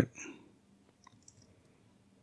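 Two faint computer keyboard key clicks close together about a second in, otherwise near silence.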